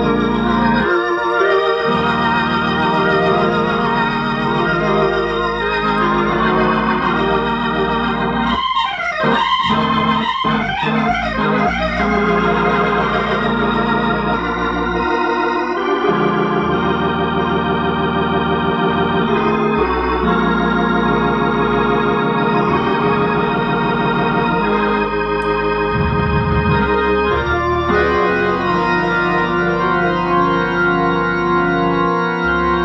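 1959 Hammond B3 tonewheel organ played through Leslie 122 and 122A rotating speakers: full sustained chords changing over a stepping bass line, with a flurry of fast, wavering notes about nine to twelve seconds in.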